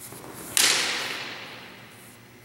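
A single sharp broadsword strike about half a second in. The clash rings on and echoes off the gym walls, fading over more than a second.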